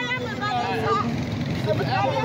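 A person talking over a steady low background noise.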